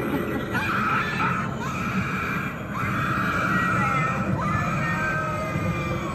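A high, drawn-out recorded scream from an animatronic Halloween prop, breaking off and starting again a few times, over a low background rumble.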